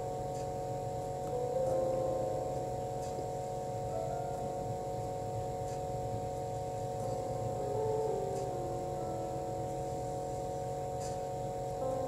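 Soft background music of long held notes that change pitch slowly, over a low steady hum.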